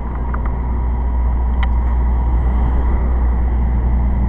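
Road traffic on a city street: cars passing close by with a steady tyre-and-engine rumble, growing louder toward the end as a pickup truck drives past.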